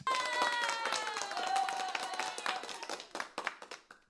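Ecamm Live's built-in applause sound effect plays through the computer: a crowd clapping, with a long whoop that falls in pitch over the first two seconds. It fades out near the end.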